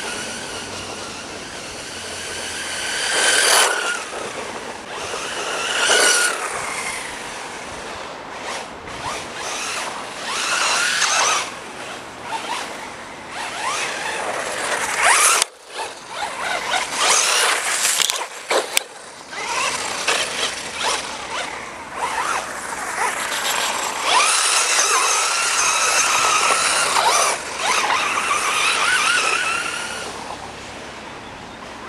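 An FTX Vantage RC buggy's 2950kv brushless motor and shaft drivetrain whining as it runs on asphalt, the pitch rising and falling again and again as the car speeds up, slows and passes. The sound drops out briefly about halfway through.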